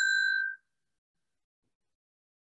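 Timekeeper's bell struck once: a single ringing ding that dies away about half a second in, marking the end of the one-minute preparation time.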